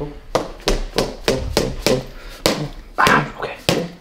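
A chiropractic mallet repeatedly striking a chrome-handled metal instrument held against the shoulder muscles: a quick run of about a dozen sharp taps, roughly three a second.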